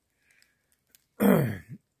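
A man clearing his throat once, a short rasp that drops in pitch, about a second into a pause in his talk.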